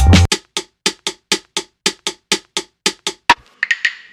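Hip-hop beat playing back from a music production program, at the point of a switch-up. The deep bass drops out just after the start, leaving a bare percussion hit repeating about four times a second, with a few short higher-pitched notes near the end.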